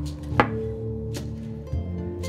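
Acoustic western guitar music, with a few sharp knocks over it as a beech-wood revolver cylinder and aluminum toy cartridges are set down on an OSB board. The loudest knock comes about half a second in, with lighter ones later.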